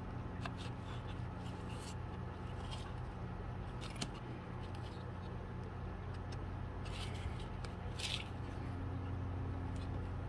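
Thin wooden dollhouse-kit pieces being pressed and fitted together by hand, giving a few faint scattered scrapes and clicks over a steady low hum.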